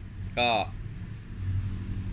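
A man says one short word, then a steady low background hum carries on, swelling slightly about three quarters of the way through.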